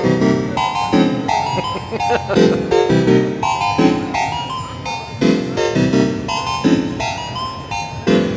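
Eurorack divide-down organ module with full polyphony playing a fast, repeating sequence of short organ-tone chords and bass notes, driven by a step sequencer.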